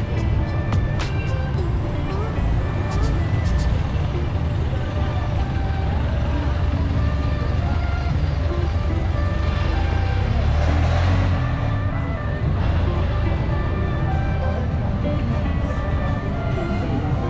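Busy street ambience: road traffic running steadily with voices and music mixed in. A vehicle passes closer, louder, about ten to eleven seconds in.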